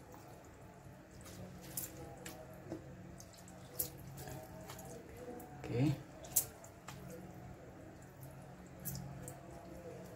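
Faint wet clicks and drips as hands press and squeeze water out of a soft heap of wet fish-roe bait, over a low steady hum.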